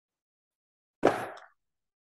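A single short thump about a second in, fading within half a second, as a paperback book is put down.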